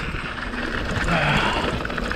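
Mountain bike rolling fast down a dirt and rock singletrack: steady tyre rumble and frame rattle mixed with wind rushing over the action camera's microphone.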